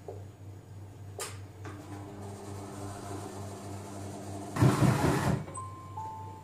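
SilverCrest Monsieur Cuisine Connect food processor running its kneading function, the motor settling into a steady low whir after a click about a second in. A loud rush of noise comes about four and a half seconds in and lasts under a second.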